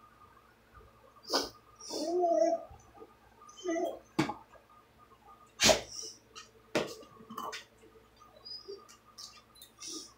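A dog whining briefly twice, with sharp clicks and light rustling from a small gift box and its packaging being handled and pried open.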